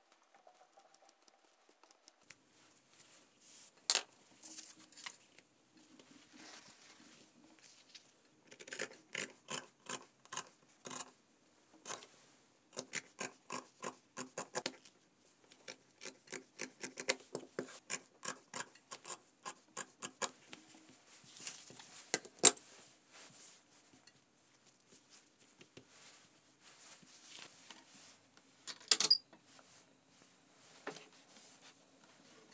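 Fabric shears snipping through cotton fabric in runs of short crisp cuts, about two or three a second, with a few louder single clicks of tools handled on a hard worktop.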